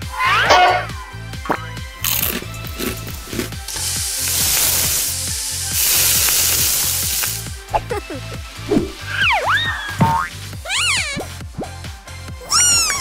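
Background music with cartoon sound effects: a sizzling effect of burger patties frying, lasting about five seconds from roughly two seconds in, between squeaky rising-and-falling whistle-like glides at the start and near the end.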